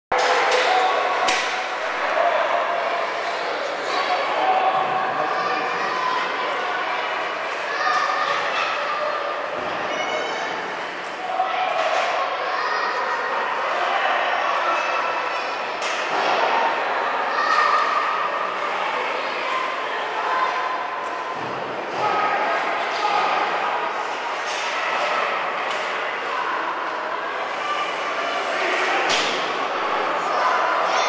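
Indoor ice-rink sound during a hockey game: indistinct voices of players and spectators echoing in the arena, with sharp knocks of pucks and sticks striking the ice and boards scattered through.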